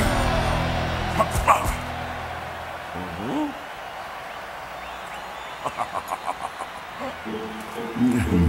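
Cartoon soundtrack: a low music chord fades out over the first couple of seconds. It leaves a quieter steady background haze with a few short sound effects, including a quick run of about seven pulses late on.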